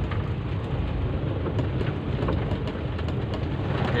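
Steady low rumble of a car's engine and tyres on a wet road, heard from inside the cabin, with a few faint ticks.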